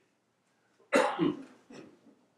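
A man coughing close to a microphone: one loud cough about a second in, then a shorter, weaker one just after.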